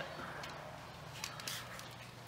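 Quiet store room tone with a steady low hum and a few faint, light clicks a little past a second in.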